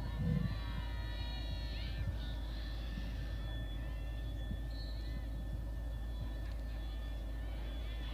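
Faint open-air field ambience at a lacrosse draw: distant, indistinct shouts from players and spectators over a steady low hum.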